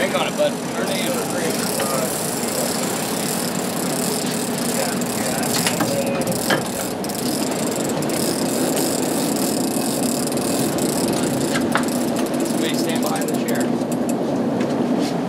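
Sport-fishing boat's engines running steadily under way, a low drone with water rushing past the hull and wind hiss over it.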